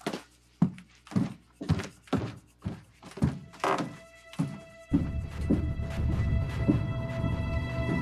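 Footsteps thudding on wooden stairs, about two a second. About five seconds in, background music with held notes and a low bass swells up under them.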